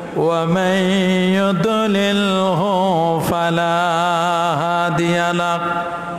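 A man's voice chanting melodically into a microphone, holding long notes with ornamented, wavering runs of pitch and a few brief breaths between phrases.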